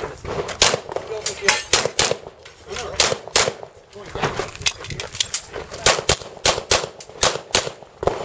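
Handgun firing in quick strings of shots, often in pairs, about two to three shots a second, with a couple of short pauses between strings.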